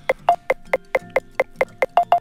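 iPhone obstacle-detection app (Obstacle Detector) sounding its proximity alert: short tick-like beeps repeating about five times a second and getting faster near the end. The quicker the beeps, the closer the LiDAR-measured obstacle.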